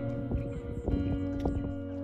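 Background music: held, sustained notes with frequent light percussive hits.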